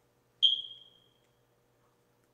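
A single high-pitched beep a little under half a second in, fading out over about half a second, over a faint steady hum.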